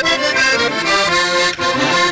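Accordion playing a traditional folk dance tune, sustained chords and melody over a steady beat.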